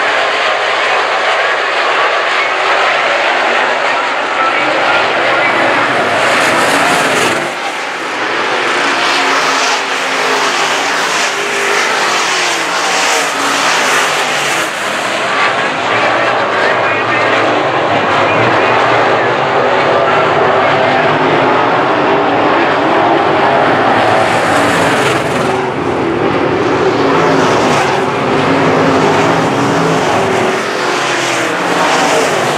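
A field of IMCA Modified dirt-track race cars running flat out, their V8 engines loud and continuous, with the pitch rising and falling over and over as cars pass and accelerate off the turns.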